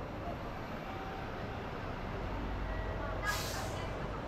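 Steady city street traffic noise, a low rumble of cars on a wide road, with one short hiss a little over three seconds in.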